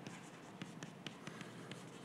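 Chalk writing on a blackboard: faint, irregular taps and scratches as letters are written.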